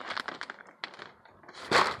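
Plastic bag of peat moss crinkling and rustling in short bursts with scattered small clicks, and one louder rustle near the end.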